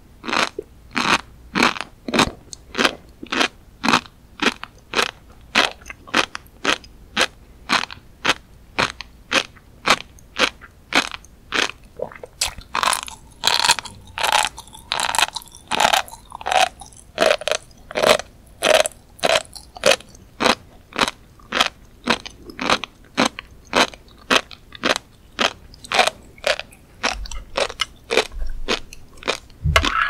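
Close-miked chewing of a mouthful of flying fish roe (tobiko), the small eggs crunching between the teeth at a steady rhythm of about two chews a second. Through the middle the sound turns busier and more continuous before the even chewing returns.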